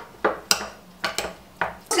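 Metal spoon clinking and scraping against a white ceramic bowl while mashing hard-boiled egg yolk with mustard: about six sharp, separate clinks.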